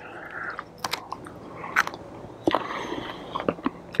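A man chewing a raw Chinese cabbage leaf eaten straight from the plant, with irregular crisp crunches.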